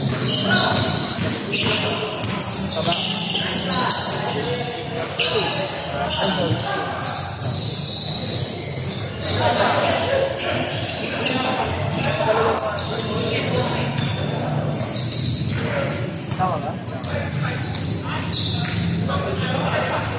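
Basketball game in a large, echoing gym: a ball bouncing on a wooden court as it is dribbled, with players' shoes on the floor and voices calling out throughout.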